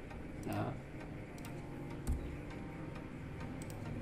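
A few scattered clicks of a computer keyboard and mouse as code is typed and edited, over a low steady hum.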